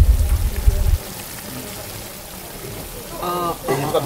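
A loud low rumble for about the first second, then the steady hiss of a large pot of rougail z'andouille simmering in its tomato sauce, with a short spoken word about three seconds in.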